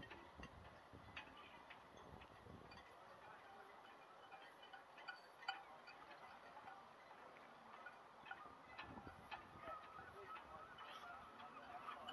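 Near silence: faint outdoor room tone with a few small, light clicks.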